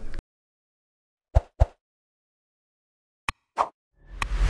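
Dead silence broken by four short pops: two about a second and a half in, and two more near the end.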